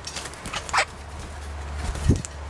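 Australian king parrots at close range on a seed feeding tray: light clicks and rustling from beaks and wings, with one short, harsh call about three quarters of a second in.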